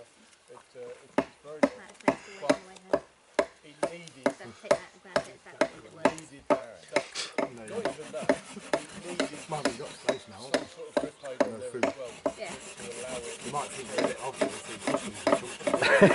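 A knife tip scraping and twisting into the end grain of a wooden bearing block, carving out the socket for a bow drill spindle. The scrapes come about two a second at first, then quicker and closer together from about halfway, getting louder near the end.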